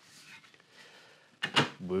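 Faint rustling as a flamed sycamore bass guitar neck blank is handled, then a sharp wooden knock about one and a half seconds in as the neck is laid down on the wooden workbench.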